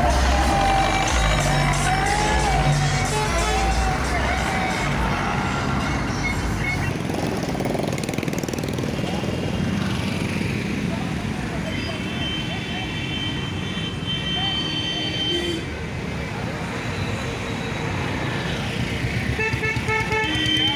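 Loud music with heavy bass from a tractor-mounted sound system, which drops away after about seven seconds. What follows is a busy mix of voices and vehicle noise. A horn sounds for a few seconds past the middle.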